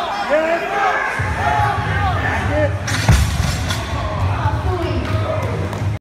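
Spectators yelling encouragement at a heavy deadlift, then a loaded barbell dropped onto the lifting platform with one loud bang and a short rattle of its plates about three seconds in, the end of a missed pull.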